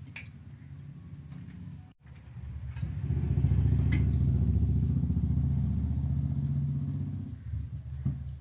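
A low engine rumble swells about three seconds in, holds, and fades away near the end, over a fainter steady hum.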